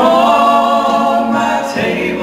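Two men singing a gospel song together through handheld microphones, holding a long note that breaks off near the end.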